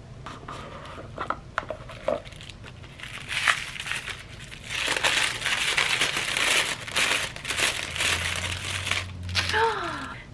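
A few light clicks and taps of a cardboard advent-calendar drawer being pulled open, then about seven seconds of continuous crinkling of tissue paper as a small boxed skincare bottle is unwrapped.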